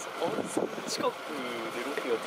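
Indistinct speech: people chatting, with words too unclear for the recogniser to pick up.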